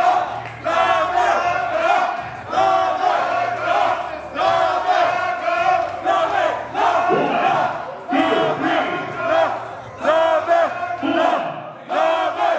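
A crowd of many voices shouting and cheering together, rising in loud surges about every two seconds.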